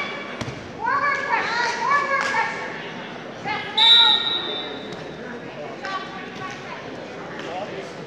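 Coaches and spectators shouting in a large gym, with a thud on the mat early on. About four seconds in, a referee's whistle blows once for about a second as the action is stopped and the wrestlers are stood up.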